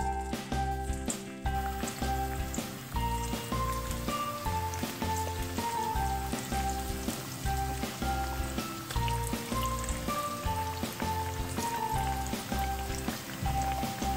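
Background music with a repeating melody over a regular bass, laid over hot oil sizzling as spice-coated bitter gourd pieces deep-fry. The sizzle fills in after the first second or so, as the pieces go into the oil.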